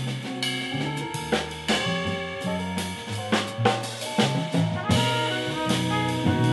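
Small-group jazz playing: a drum kit hitting steady strokes under a bass line, with horns holding notes over them.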